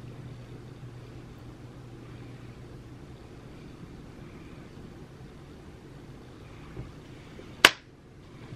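Quiet room tone with a steady low hum, broken near the end by one sharp click.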